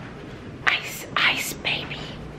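A person whispering a few short breathy phrases, starting a little way in.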